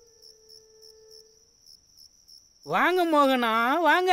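Crickets chirping steadily in the background, a high pulsing trill, while a low held musical note fades out in the first second and a half. From just under three seconds in, a loud drawn-out voice comes in, rising and falling in pitch.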